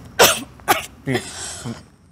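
A woman coughing several times in short bursts, the first cough the loudest and the later ones fainter.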